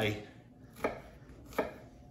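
Chef's knife cutting an onion on a wooden cutting board: two sharp knocks of the blade on the board, a little under a second apart.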